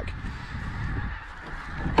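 A large flock of pink-footed geese calling in the distance, many overlapping honks merging into a steady chatter.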